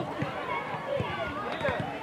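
Several young players' voices calling and shouting over one another on a football pitch, with a few dull thumps underneath.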